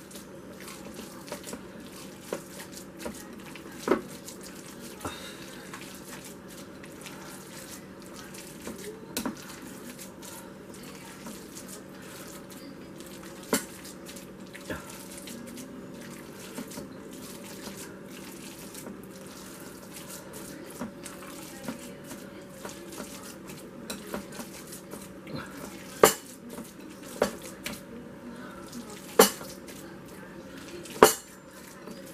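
Bare hands kneading and folding raw ground beef and pork meatball mixture in a glass mixing bowl, faint and steady, with a few sharp clicks of hand or bowl against the glass, the loudest near the end.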